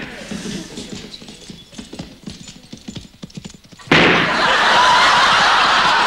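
Galloping horse hoofbeats as a ragged run of dull thuds. About four seconds in, a studio audience breaks into loud, sustained laughter.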